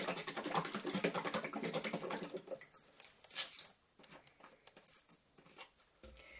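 Glass bottle of oil-and-vinegar salad dressing shaken hard, the liquid sloshing in quick strokes for about two and a half seconds. After that come only a few faint handling sounds.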